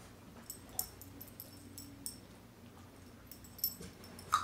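Metal tags on a dog's collar jingling in short, irregular clinks as the dog steps and shifts about.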